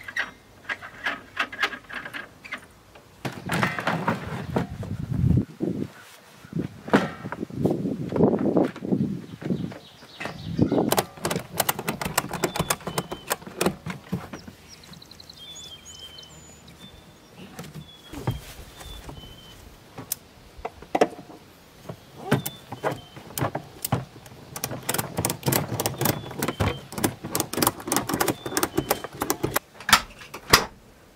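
Irregular knocks, clanks and thuds with some scraping as filled propane tanks are handled and set into place on the camper trailer's tongue, with faint bird chirps in the middle.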